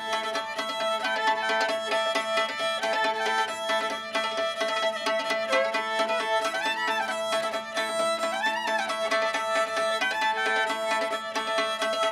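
Old-time fiddle tune played with fiddlesticks: the fiddle is bowed while a second player beats a pair of thin sticks on its strings, laying a steady, rapid tapping rhythm over the melody. This is the old way of giving a lone fiddle extra dance rhythm.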